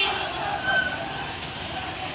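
Busy street ambience: a steady mix of traffic noise and background voices. A short, higher tone sounds briefly about two-thirds of a second in.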